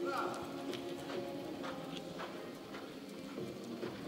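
Hoofbeats of a reining horse loping on arena dirt, a steady run of soft knocks about two a second.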